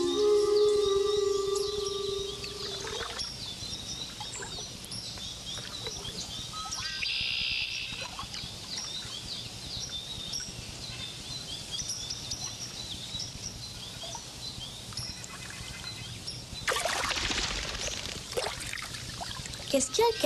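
Wild birds chirping and singing throughout, many short calls over an outdoor background. A few held notes of film music end about three seconds in, and near the end comes a brief burst of splashing water.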